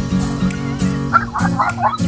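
A dog giving a quick run of short, high yips from about a second in, over steady guitar music.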